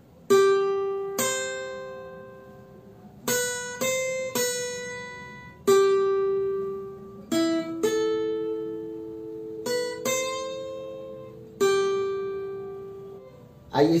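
Steel-string acoustic guitar played slowly, one picked note at a time: about a dozen notes of a melody on the high strings, each ringing out and fading before the next.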